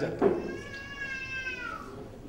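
A single long, high-pitched cry, drawn out for about a second and a half and falling in pitch at its end.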